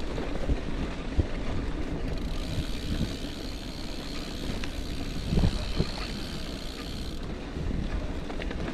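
Gravel bike riding over a sandy dirt trail: steady tyre rumble and wind buffeting the action camera's microphone, with a few short knocks from bumps, the loudest about five and a half seconds in.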